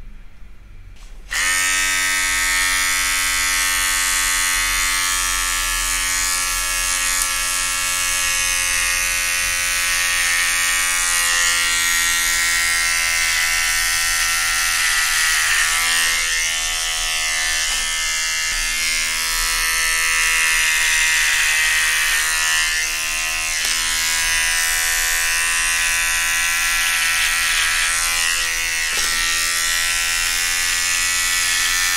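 Electric hair clipper switched on about a second in, then running with a steady hum as it cuts hair at the side of the head, the hum dipping briefly a few times.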